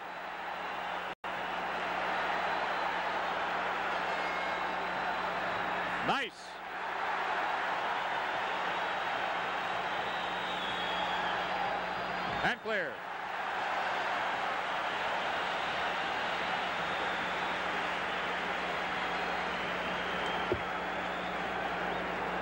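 Hockey arena crowd noise during play, a steady murmur of many voices heard through an old broadcast recording with a constant low hum. The sound drops out for a moment about a second in, and two brief swooping sounds come around six and twelve seconds.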